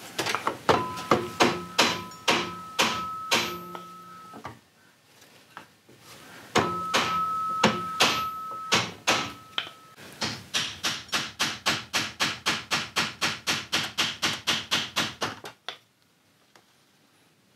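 Repeated hammer taps on a wooden dowel held against a brass rifle trigger guard, bending the brass to close a gap at the front of the guard. Two runs of about three taps a second ring with a clear metallic tone. After a short pause, a faster run of about five taps a second follows and stops shortly before the end.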